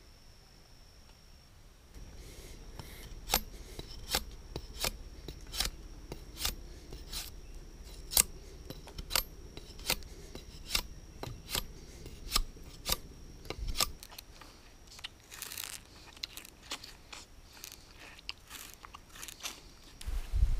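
Rind being stripped from a stalk of purple sugarcane with a blade, a run of short sharp scraping cracks about one to two a second, with a longer scratchy rasp partway through.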